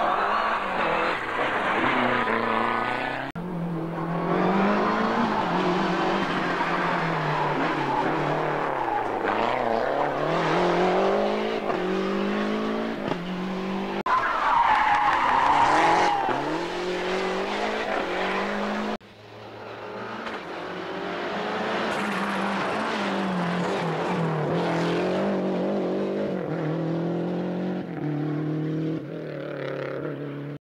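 Lancia Delta Integrale Group A rally cars, each with a turbocharged four-cylinder engine, revving hard and rising and falling in pitch through gear changes. Several cars are heard one after another, with abrupt breaks between them. A tyre squeals about halfway through.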